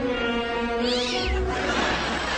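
A cat's short, high meow about a second in, over music with long held notes; in the last half-second the music gives way to an even hiss.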